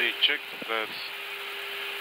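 Steady flight-deck noise of an Airbus A321 in flight: an even hiss with a steady low hum beneath it. A few short bursts of voice come in the first second.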